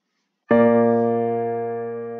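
Synthesized piano playback from notation software sounding one four-part chord, the IV chord (B-flat major) of a plagal cadence in F major, struck about half a second in and held, slowly fading.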